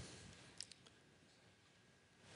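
Near silence in a pause between speech, broken by a few faint short clicks about half a second in.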